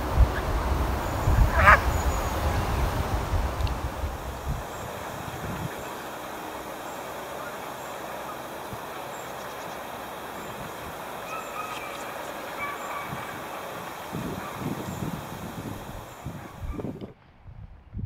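Wind rumbling on the microphone for the first few seconds, over an open-air background, with a flock of Canada geese giving a few short honking calls: one clear call about two seconds in and fainter ones later.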